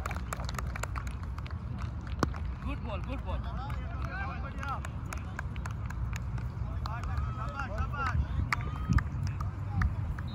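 Faint, distant voices of players calling out across an open field, over a steady low rumble, with a few sharp clicks, the strongest about two seconds in and near the end.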